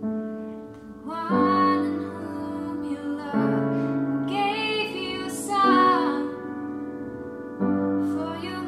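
A woman singing a slow worship song while accompanying herself on an upright piano. Held piano chords change every two seconds or so, and the voice comes in about a second in.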